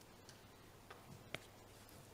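Near silence with a faint steady hum, broken by a few small clicks; the sharpest click comes a little past halfway.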